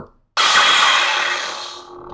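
Lightsaber soundboard (Plecter Labs Crystal Focus X) playing its ignition sound through the 28 mm speaker in the hilt as the power switch is pressed: a sudden loud rushing burst about a third of a second in, fading over a second or so into the steady hum of the idling saber.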